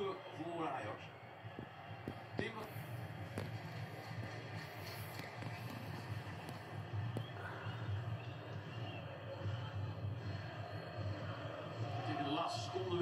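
Football match broadcast on a television in the room: a steady murmur of stadium crowd noise with faint voices, and a few light clicks.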